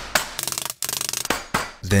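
Wooden mallet pounding ice cubes wrapped in a cloth towel, crushing them. There are two bouts of rapid knocks and crunching crackles of breaking ice, the second fading out.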